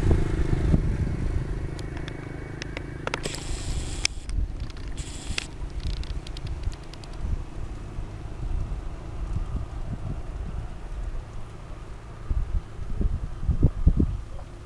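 Low humming drone from a kite's rubber-band hummer in the wind, clearest in the first second. Under it runs a rumbling wind noise that rises and falls, with a few rustling clicks about three to five seconds in.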